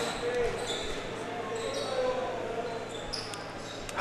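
Basketball gym background: faint voices echoing in a large hall, with a couple of soft thumps about half a second and two seconds in.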